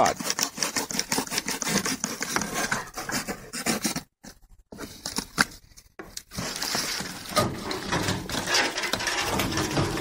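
A blade sawing through a cardboard box with quick scraping strokes to cut a hole for a smoke vent tube. The strokes stop about four seconds in, and after a brief gap there is a steadier rustle of the box being handled.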